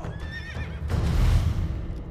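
A horse neighs briefly near the start, then a deep swelling rush of noise builds and peaks a little past the middle.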